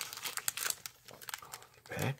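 Foil wrapper of a baseball card pack crinkling in the hands as it is handled, an irregular run of short crackles.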